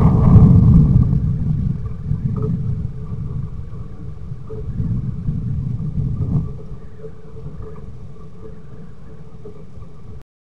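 Low rumble picked up by a trail camera's microphone, loudest at the start and settling lower after about six seconds, with a faint steady hum above it.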